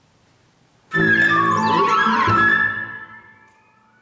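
Chamber ensemble of flute, violin, harp and piano comes in loudly about a second in, with sliding, bending pitches, then breaks off after about two seconds and dies away: a false start of the first take.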